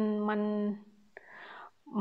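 A woman's voice holding out one hesitant syllable at a steady pitch. Then comes a small mouth click, a soft audible breath, and the same drawn-out syllable again near the end.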